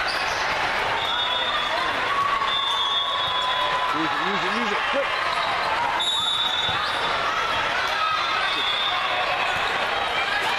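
Busy indoor volleyball hall ambience: the ball being struck and landing, sneakers squeaking on the sport-court floor in short high chirps, and a steady mix of voices from players and spectators.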